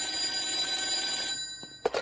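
A telephone bell ringing once, starting suddenly and lasting about a second and a half before fading, with a short burst of sound near the end.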